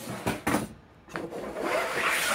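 Small wooden block knocked and slid on a wooden workbench top: a few light knocks early, then a longer rubbing scrape near the end.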